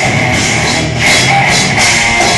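Live death/black metal band playing loud and dense: heavily distorted electric guitars over a drum kit, with a brief dip in loudness about a second in.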